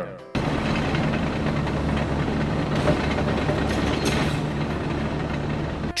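Sound effect for a tractor-mounted chain trencher: an engine running steadily, with a dense mechanical clatter over a low hum. It starts just after the beginning and cuts off near the end.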